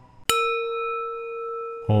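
A single strike on a bell-like metal instrument such as a meditation bowl, ringing on with a few steady overtones and slowly fading.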